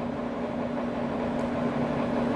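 A steady mechanical hum holding one low tone, with a faint tick about one and a half seconds in.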